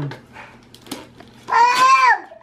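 Gift wrapping paper rustling and crinkling faintly as a present is unwrapped, then, about a second and a half in, a short high-pitched vocal cry that rises and falls.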